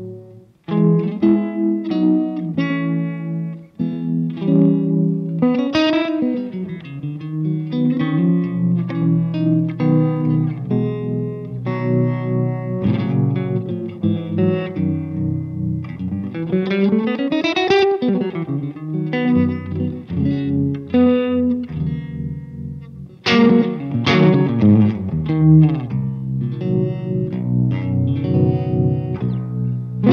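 Electric guitar, a Telecaster-style instrument, playing a melodic passage of single notes and chords through a Walrus Audio Monument tremolo pedal, with a few bent notes gliding up and down. Near the end the playing drops out briefly, then comes back in with a loud chord.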